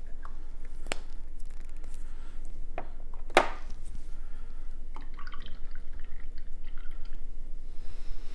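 A few sharp clicks and taps, the loudest about three and a half seconds in, then faint scratching: a small plastic paint pot and a paintbrush being handled at a wooden table.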